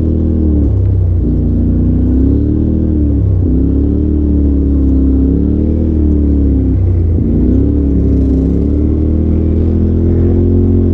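Polaris RZR side-by-side's engine running at about 4,500–5,000 rpm on the move, heard from the driver's seat, its pitch sagging and climbing again three times.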